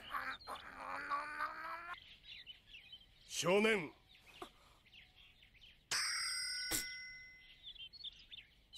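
Japanese anime dialogue playing quietly, with a long held note in the first two seconds. A bright ringing tone comes in about six seconds in and fades out.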